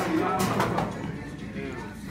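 Muffled voices with music in the background, with no distinct sound standing out.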